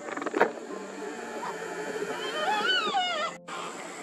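A yellow-tailed black cockatoo giving one wavering call that rises and falls in pitch, about two seconds in. A sharp knock comes just before, near the start, and is the loudest sound.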